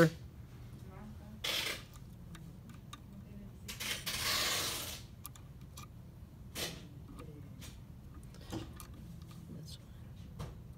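Small clicks and scrapes of a metal key blank being worked into the M4 clamp jaw of a Mini Condor key-cutting machine. There is a short rasp about a second and a half in and a longer one around four seconds.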